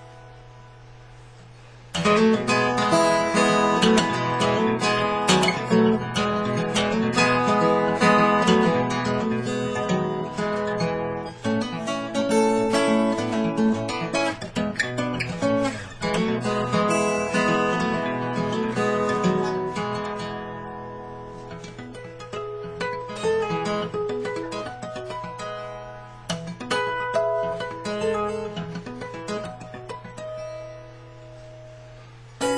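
Capoed acoustic guitar in open D tuning played fingerstyle: a picked melody over bass notes. The notes come in loud about two seconds in after a quiet gap, and the playing grows softer in the second half.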